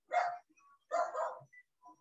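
Two short animal calls about a second apart, each lasting under half a second.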